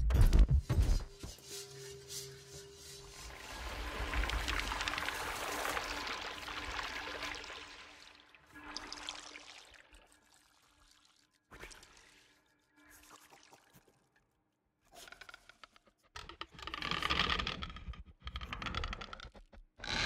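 Electroacoustic music made live from a chef's cooking on a sensor-fitted kitchen table: sharp, amplified knife chops on a cutting board in the first second, then a long hissing wash over a faint steady tone. After that come scattered softer sounds with short silences, growing louder again near the end.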